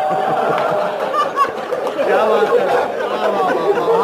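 Speech and chatter: a man's amplified voice in a large hall with listeners talking and laughing at a joke.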